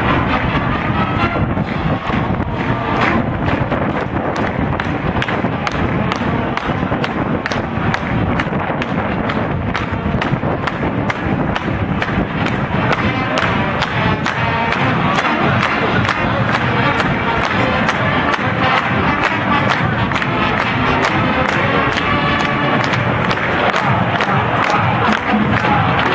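Marching band brass and drumline playing on a stadium field with a steady, regular drum beat, heard from the stands with crowd noise mixed in.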